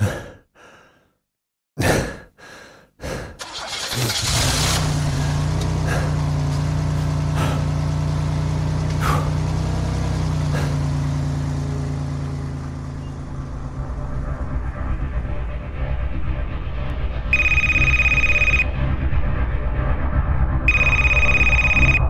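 Drama sound effects: a few thuds, then a car engine starts about four seconds in and runs steadily. A phone rings twice near the end, each ring lasting about a second.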